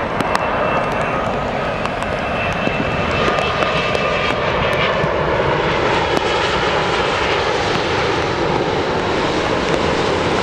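Boeing 787 airliner on final approach with landing gear down, its jet engine noise steady and growing slightly louder as it passes close, with a faint high whine in the first half.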